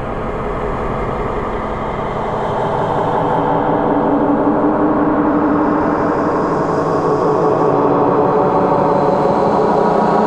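Dark ambient drone: dense, layered, sustained tones that slowly swell in loudness.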